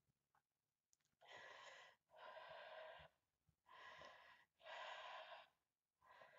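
A woman under hypnosis breathing deeply: four audible breaths of about a second each, coming in two in-and-out pairs.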